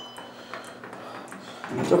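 A few faint clicks from an elevator's door-close pushbutton being pressed repeatedly; the door does not respond because the close button does not work.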